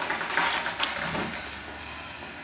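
Tape measure blade being pulled out of its case, a few sharp metallic clicks and a brief rattle about half a second in, then it quiets down.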